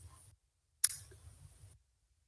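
A single sharp computer mouse click about a second in, with near silence around it, heard over a video-call microphone.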